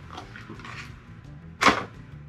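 Plastic blister pack of soft swimbaits being handled, with one sharp click about a second and a half in.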